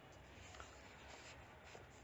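Near silence: faint room tone with a few faint, brief soft noises.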